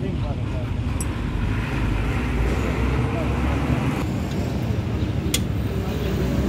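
Steady low rumble of a motor vehicle engine running, with a couple of sharp metallic clicks from a wrench working on the clamp of a truck leaf-spring pack, one about a second in and one near the end.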